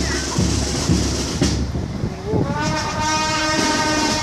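A drum beat thuds about twice a second. About two and a half seconds in, a horn starts a long, steady blast over it, a horn with the deep, multi-note sound of a train horn.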